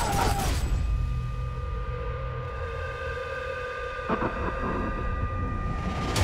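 A woman's short scream over a sudden loud hit, then a film-trailer drone of held high tones over a deep rumble, with another hit about four seconds in.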